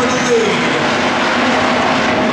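Several hobby stock race cars' engines running together in a pack on a dirt oval, their revs rising and falling.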